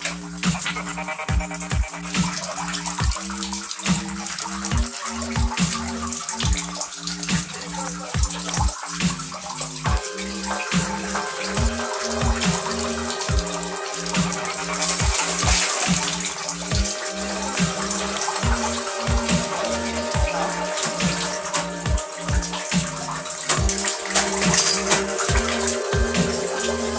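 Electronic music with a steady beat and a held bass line. From about ten seconds in, a hiss of running water is mixed over it.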